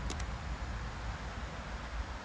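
Wind buffeting the microphone: a steady, uneven low rumble with a faint hiss, and two small clicks just after the start.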